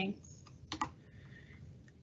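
Faint computer keyboard key presses: two quick clicks a little before one second in and a softer one near the end, as the presenter advances her slide.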